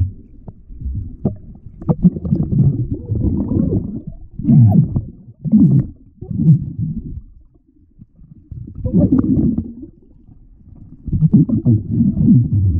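Muffled underwater sound picked up by a submerged camera: irregular bursts of low rumbling and sloshing from water moving around it as a snorkeler swims and reaches along the bottom, with a quieter stretch about eight seconds in.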